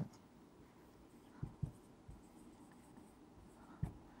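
A felt-tip marker writing on a whiteboard, faint, with a few soft short knocks as it strokes and taps the board.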